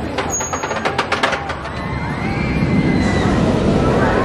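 A steel roller coaster train rolling down from the crest of a hill, its rushing rumble growing louder through the second half. A short laugh comes first.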